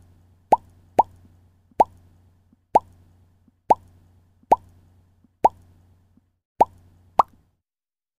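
Bubble-pop sound effects: a series of about nine short bloops, each a quick upward sweep in pitch, coming at uneven intervals under a second apart, one for each letter popping onto an animated title, over a faint low hum.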